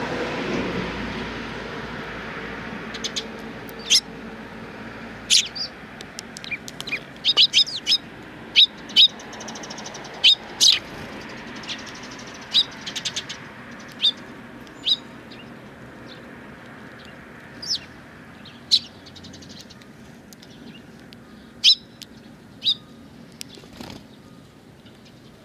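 Eurasian tree sparrows giving short, sharp chirps at irregular intervals, often two or three in quick succession, most frequent in the middle. A low background hum is loudest at the start and fades over the first few seconds.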